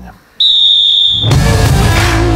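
Segment-intro jingle: a high, steady tone lasting under a second, then loud rock music with guitar kicking in about a second and a quarter in, marking the start of the quick-fire questions round.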